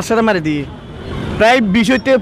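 A man's voice in the open air with road traffic running behind it; a passing vehicle's noise comes through clearly in a pause in his talk, about half a second to a second and a half in.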